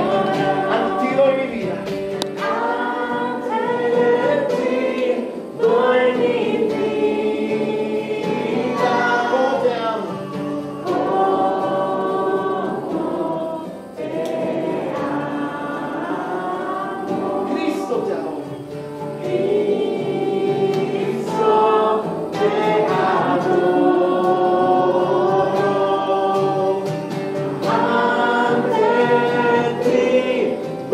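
A group of children singing a Christian worship song together in unison, in phrases of a few seconds each with brief dips between them.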